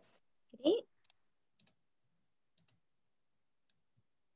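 A short vocal sound just under a second in, then a few faint, sharp clicks scattered over the next few seconds, with near silence between them.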